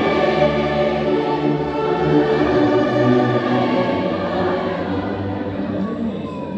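A large amateur church orchestra of violins, saxophones, clarinets, brass and bassoon playing a slow hymn in long held chords, with voices singing along. The music softens toward the end.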